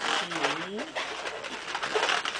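Latex modelling balloon (Qualatex 260Q) rubbing and squeaking in the hands as it is twisted into small loops. About a quarter second in comes a short low sliding tone that dips and rises again.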